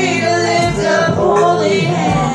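A church congregation singing together, many voices at once on a slow, sustained melody.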